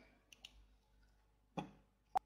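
Near silence with two faint computer mouse clicks close together about a third of a second in, then a brief, slightly louder soft noise near the end.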